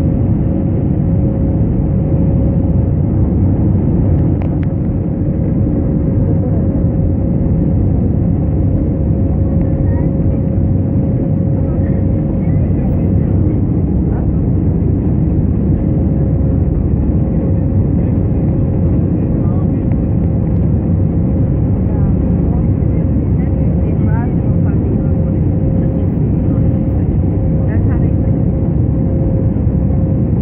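Airliner cabin noise heard from a window seat over the wing during the climb after takeoff: a loud, steady rumble of jet engines and rushing air with a constant hum-like tone running through it.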